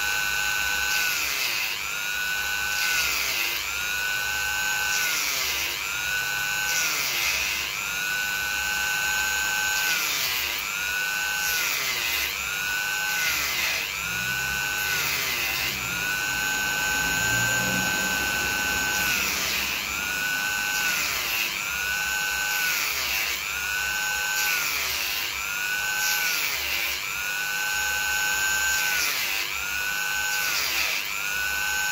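Handheld rotary tool with a small cutting disc cutting into a coconut shell: a steady high-pitched whine whose pitch dips briefly every second or two.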